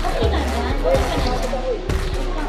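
Voices calling out over background music.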